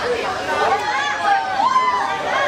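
Several high, raised voices calling out over one another: sideline spectators and players shouting during play.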